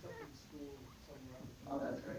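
Faint speech: a voice talking away from the microphone, its pitch rising and falling.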